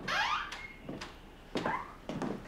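Footsteps on a hard floor, about two a second, with a rising squeak at the start.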